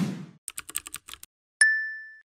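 Animated end-screen sound effects: a short whoosh, then a quick run of about eight typing clicks as the on-screen text appears, then a single bright ding that rings and fades near the end.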